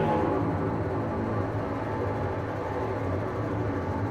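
Chamber string orchestra playing a dense, grainy cluster texture with no clear held pitches, a restless wash of many bowed strings.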